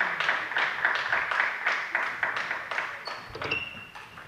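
Spectators clapping in a sports hall after a table tennis point, a quick patter of many hands that dies away about three seconds in.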